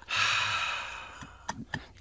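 A person's long, breathy sigh into a studio microphone, fading away over about a second, followed by a couple of faint clicks near the end.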